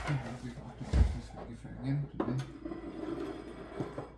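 Low talk at a breakfast table, broken by a dull thump about a second in, the loudest sound, and a small knock near the end.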